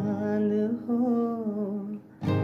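A man's voice humming a wordless, gliding melody line over acoustic guitar. The phrase stops at the very end.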